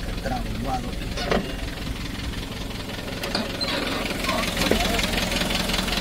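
Truck engine idling steadily with a low, even running sound.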